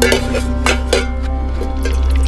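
Metal clinks of a kettle lid and camping stove being handled: a few sharp clinks with a short ring near the start and about a second in, over steady background music.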